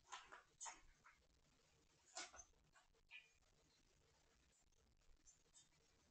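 Kittens playing on a hardwood floor: a few faint, short scuffs and taps in the first second and again around two and three seconds in, otherwise near silence.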